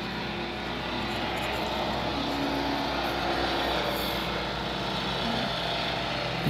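Steady outdoor background noise: an even rumble and hiss with a faint engine hum in it.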